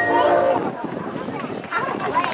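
A marching band's held chord cutting off about half a second in, followed by spectators in the stands yelling and whooping as clapping begins.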